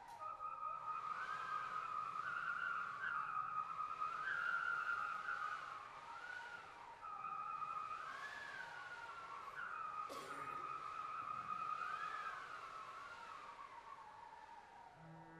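Live film-score music from an instrumental ensemble: a high, slowly gliding, wavering melodic tone over a steady held note, with a short percussive hit about ten seconds in.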